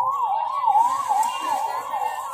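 Electronic siren sounding a fast yelp: a loud high tone sweeping up and down about three times a second, without a break.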